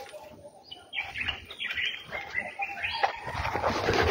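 Birds chirping, starting about a second in and growing busier and louder toward the end.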